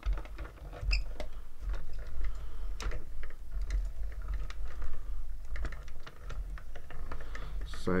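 Hand-cranked Mini Stampin' Cut & Emboss die-cutting machine being turned, the cutting plates and die rolling through it: an irregular run of small clicks and rattles over a low rumble.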